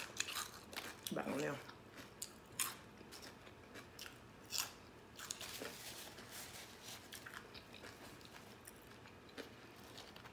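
Close-miked chewing of crunchy potato chips: crisp crunches in the first few seconds, thinning to quieter, sparser chewing. There is a short closed-mouth "mm" hum about a second in.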